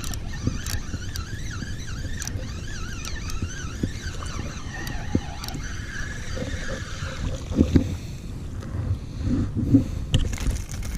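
Penn spinning reel being cranked fast to reel in a hooked trout, its gears whirring with a wavering pitch for the first several seconds, with a few small clicks, over a low wind rumble on the microphone.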